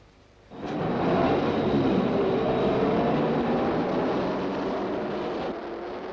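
A car running on the road, its engine and road noise coming in suddenly about half a second in and then holding steady and loud.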